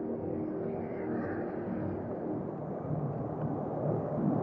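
Steady low rumbling outdoor noise on a walking action camera's microphone, while ambient background music fades out within the first second.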